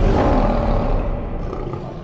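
Lion roar sound effect in a channel logo sting, one long roar slowly fading out.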